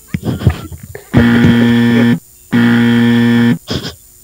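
A buzzer sound effect sounding twice, two flat steady tones of about a second each with a short gap between them, marking that the caller's time is up. Brief laughter comes just before it.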